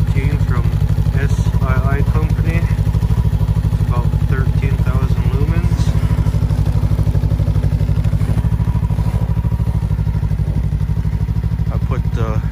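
Ski-Doo Tundra LT's 600 ACE three-cylinder four-stroke engine idling steadily, an even, rapidly pulsing low hum.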